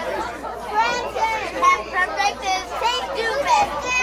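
Several children talking and chattering over one another, with no single clear voice.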